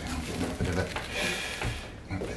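Plastic cling film crackling and rustling under hands pressing it down onto soft expanding foam filler moulded inside a guitar hard case.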